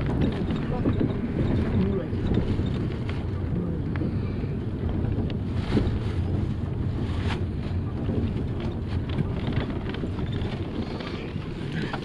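Inside a moving bus: steady engine and road rumble as it drives along an unpaved street, with a few knocks and rattles, the sharpest about six and seven seconds in.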